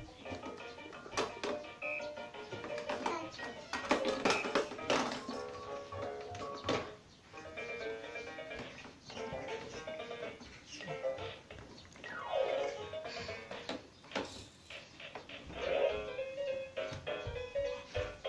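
A baby's electronic musical activity table playing short electronic melodies one after another, set off as a toddler presses its keys.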